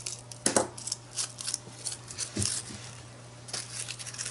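Paper rustling and crinkling with small scattered taps and clicks as a crinkled paper flower embellishment is handled and pressed onto a journal page, over a steady low hum.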